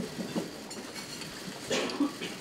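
Room ambience of a crowded press room: low indistinct murmur and movement of people settling in, with a brief loud clatter near the end, such as a chair or table being handled.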